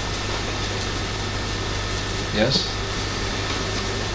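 Steady low electrical hum and hiss under quiet room tone, with a brief voice sound about two and a half seconds in.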